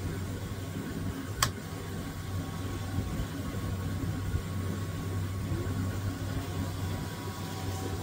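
Steady low motor hum of a film-transport machine winding a warped 8mm film slowly through a hand-held cleaning cloth, with one sharp click about a second and a half in.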